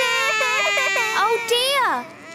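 Two small children crying together in a long, drawn-out wail over a toy both want. One cry wavers up and down while the other holds steady, and both fall in pitch near the end.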